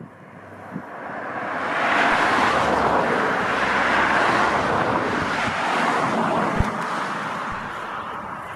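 A rushing noise that builds over about two seconds, holds, then slowly fades: a vehicle passing by.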